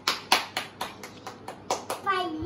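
A quick run of sharp taps or claps, about five a second, some louder than others.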